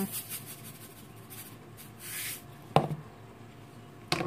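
Quiet kitchen handling over a mixing bowl: a brief soft hiss about two seconds in, then a single sharp clack as a utensil is handled, shortly before a wire whisk is taken up.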